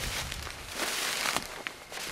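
Rustling and crackling of dry brush and twigs close to the microphone, with a few sharp snaps, loudest in the middle.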